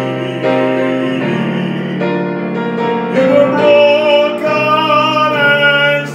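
Digital piano accompaniment with long held sung notes over it. The singing swells to a louder, higher sustained note about halfway through.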